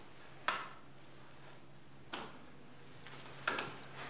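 A quiet room with a steady faint hum and a few short knocks or taps: the loudest about half a second in, then softer ones around two seconds and three and a half seconds in.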